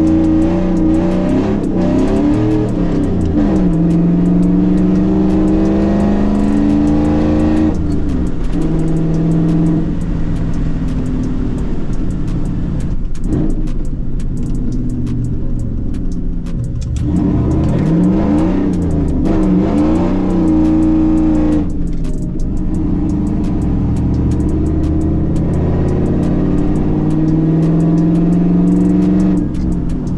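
Chevrolet pickup's engine heard from inside the cab while driving. Its pitch climbs as it accelerates and drops back at each gear change, over and over.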